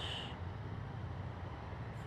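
Yamaha FZ-09's inline three-cylinder engine idling steadily with a low rumble while the bike stands still.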